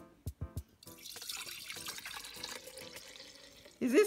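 Homemade almond milk poured from a bowl into a glass mason jar: a steady splashing pour starting about a second in and lasting about three seconds. Background music with a beat plays underneath, and a voice exclaims right at the end.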